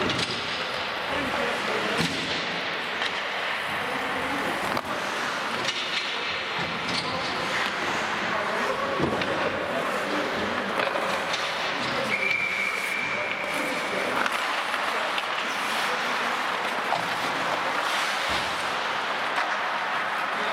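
Ice hockey rink sounds: skates scraping on the ice, sharp clacks of sticks and puck, and players' voices calling out. About twelve seconds in comes a steady high whistle lasting about two seconds, and a dull thump follows near the end.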